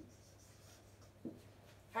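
Marker pen writing on a whiteboard: faint, soft scratching strokes, with one short soft sound just past a second in.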